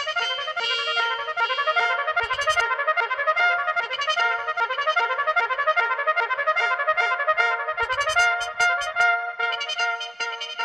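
Trumpet phrase live-sampled by the mutantrumpet, an electro-acoustic trumpet, and played back as a fast stream of short repeating notes over a steady held tone, the sample's length and repetition being changed with the instrument's knobs.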